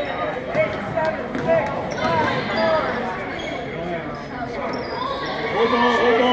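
A basketball bouncing on a hardwood gym floor during play, among the shouts and chatter of players and spectators in a reverberant gym.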